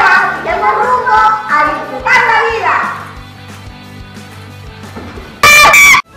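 A man and a boy speaking loudly over background music for the first few seconds, then the music alone. Near the end a short, very loud burst of about half a second cuts off abruptly.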